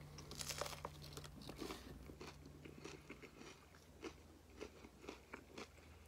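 Quiet crunching of a hard taco shell wrapped in a soft tortilla being bitten and chewed. The crunches are densest in the first two seconds and thin out to occasional crackles.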